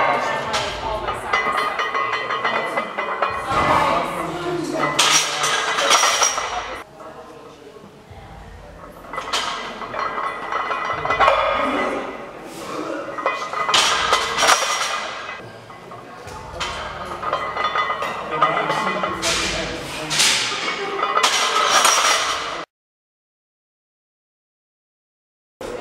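Iron plates on a loaded barbell clinking and rattling through heavy front squat reps, in surges every few seconds over background music. The sound cuts off abruptly near the end.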